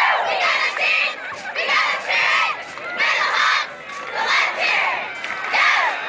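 A cheerleading squad shouting a cheer in unison, in short rhythmic shouted phrases.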